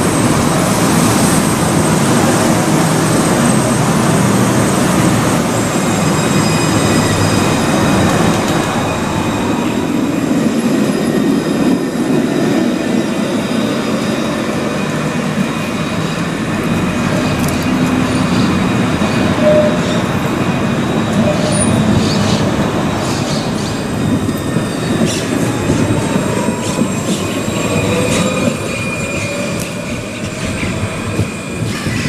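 Alstom Citadis low-floor trams running past on street track, a steady rolling rumble with thin high wheel-on-rail squeal tones over it. A rising whine comes in near the end.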